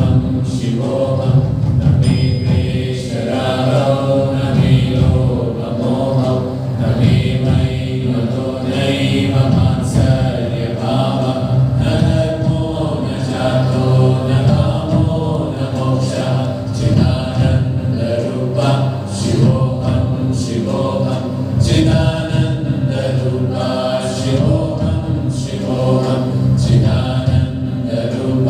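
Meditative devotional chanting by voices, held over a steady sustained keyboard drone, going on without pause.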